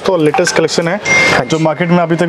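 A man speaking, with a short hiss about a second in.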